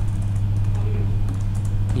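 Computer keyboard typing: a few scattered keystrokes over a steady low electrical hum.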